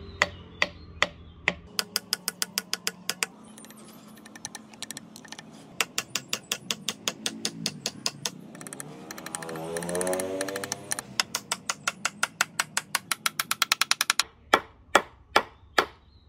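Hammer tapping a wooden wedge down into the slotted top of an axe handle to seat it in the axe head's eye: quick runs of light strikes, several a second, with short pauses between runs. A pitched sound rising and then falling in pitch comes in briefly near the middle.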